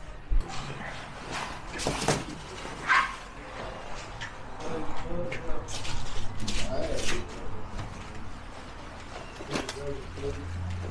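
Scattered knocks and crinkling of a plastic tarp as people step on it and handle a giant watermelon, with indistinct voices in the background.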